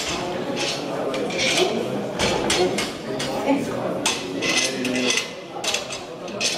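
Steel weight plates clinking and clanking as the barbell is reloaded between attempts, over indistinct voices echoing in a large hall.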